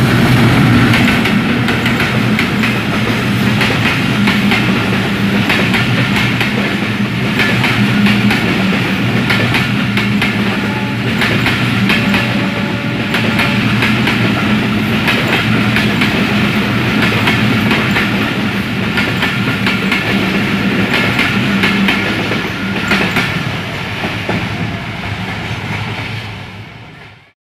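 A Bangladesh Railway diesel locomotive hauling a passenger train passes close by, its engine loudest at the start, followed by the coaches rolling past with a steady clickety-clack of wheels over the rail joints.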